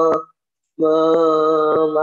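A man's voice drawing out a hesitation syllable "me…" at one steady pitch while he searches for a word. It cuts out to silence for about half a second, then the held sound resumes.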